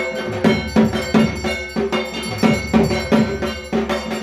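Rhythmic ritual percussion: struck metal bells or a gong ringing two to three times a second over drum beats, the accompaniment to a puja aarti.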